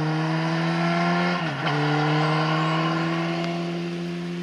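Motorcycle engine accelerating away, its pitch climbing steadily, dropping at an upshift about one and a half seconds in, then climbing again as it fades.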